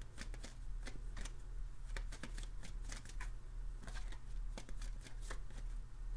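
A deck of tarot cards being shuffled by hand: a string of short, irregular flicks and riffles of card stock.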